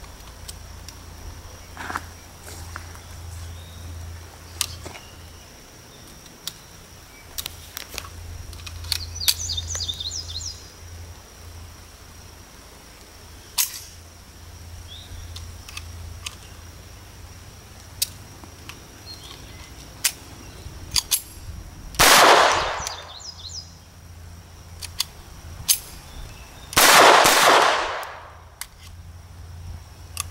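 Bersa Thunder .22 LR pistol: scattered small metallic clicks as it is handled, then two shots about five seconds apart, each ringing out for about a second. After the second shot the slide locks open, which it fails to do reliably because the pistol jams with Federal ammunition.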